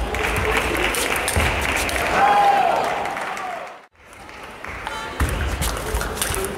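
Spectators applauding in a large sports hall, with a short shout over it about two seconds in. The sound drops out briefly just before four seconds in, then comes back with sharp clicks of a table tennis ball on bats and table as a rally is played.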